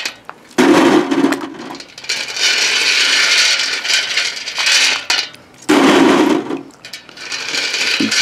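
A hand sloshing through a pan of water, scooping wet powder-coated cast lead bullets and dropping them onto a wire-mesh basket: splashing with the bullets clattering and clinking, in about three bursts.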